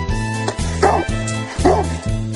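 A dog barking twice, two short barks a little under a second apart, giving the answer "two" to the spoken sum of the square root of 25 minus 3.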